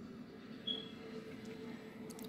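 Faint background with a steady low hum and a single short, high-pitched chirp less than a second in.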